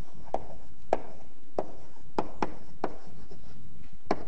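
Chalk writing on a blackboard: about seven short, sharp taps and strokes at uneven intervals as the chalk strikes and drags across the board.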